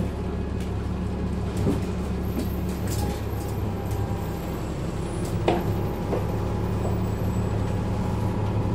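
Bus engine idling while the bus stands still, heard from inside the saloon as a steady low hum. A brief knock about five and a half seconds in.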